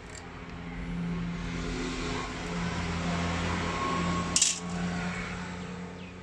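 A steady motor hum swells about a second in and eases off near the end. One sharp metallic clink comes about four seconds in.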